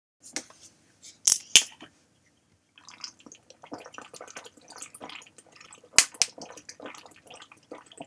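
A person drinking from a plastic water bottle: a few sharp plastic crackles as the bottle is handled, then, from about three seconds in, a run of gulps and swallows mixed with small crackles of the bottle, with one loud crack about six seconds in.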